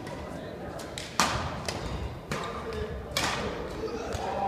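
Several sharp cracks of badminton rackets striking a shuttlecock, echoing in a large hall. The loudest comes about a second in and another near three seconds, over background voices.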